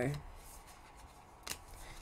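Tarot cards being handled and dealt out by hand onto a tabletop, faint, with one short sharp card snap about one and a half seconds in.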